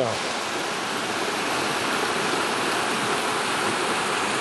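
Shallow mountain stream rushing over rocks and down a small cascade: a steady, even rush of water.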